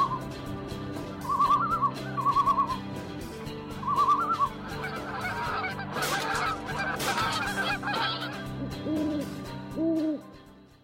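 A steady music bed with wild bird calls laid over it. Short quavering calls repeat four times, then many overlapping calls come in a burst in the middle, and two lower hooting calls follow near the end.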